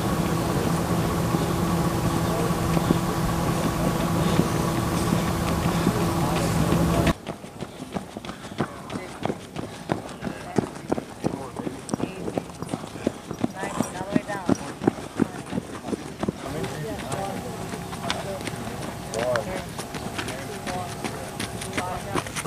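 Running footsteps of several people on a dirt track, a quick irregular patter of footfalls. Before this, for about the first seven seconds, a loud steady hum covers everything and then cuts off suddenly.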